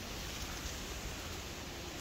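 Faint, steady rushing noise of outdoor thunderstorm weather, with no sharp thunderclap.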